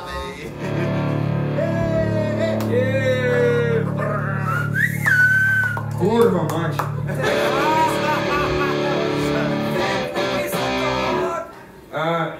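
Electric guitar through an amplifier ringing with held, sustained chords, with a man's voice sliding up and down in pitch over it; the sound drops away just before the end.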